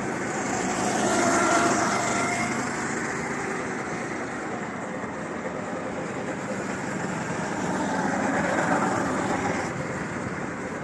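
Go-kart engines running as karts lap a wet track, rising and falling in pitch; the sound swells as one kart passes close about a second in and another near the end.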